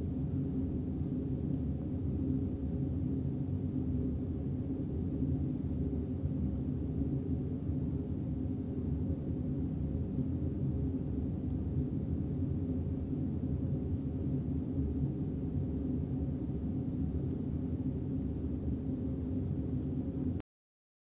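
A steady low hum with some rumble, even throughout, with no distinct events.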